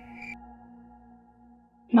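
Soft ambient background music: sustained held tones with a high pulsing chime that stops shortly after the start, the rest fading out. A woman's voice begins just before the end.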